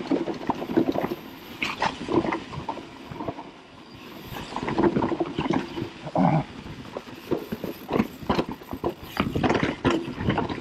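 Mountain bike riding down a dirt trail covered in fallen leaves: tyres rolling over leaves and dirt, with frequent rattles and knocks from the bike over bumps. A short pitched note sounds about six seconds in.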